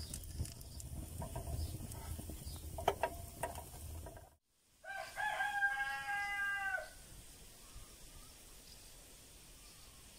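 A rooster crowing once, one call of about two seconds, starting about five seconds in just after an abrupt cut to silence. Before the cut, a low rumble with scattered crackles from a pan of bread frying over a wood fire.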